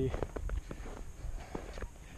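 Footsteps of a hiker walking on snow: a row of short, uneven crunching steps.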